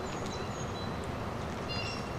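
Steady outdoor background noise, with short high-pitched bird calls repeating about every second and a half.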